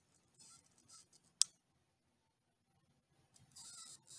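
A Jolt electric cattle prod, its trigger taped down so the current runs continuously, giving a faint, steady high-pitched buzzing hiss that starts about three and a half seconds in. Before it come a few light handling clicks and one sharp click.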